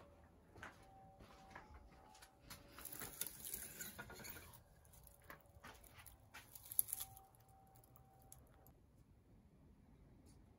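Rustling and crinkling of an artificial pine wreath being grabbed and handled, with scattered light clicks. There is a longer burst of rustling a few seconds in and a sharper one near seven seconds.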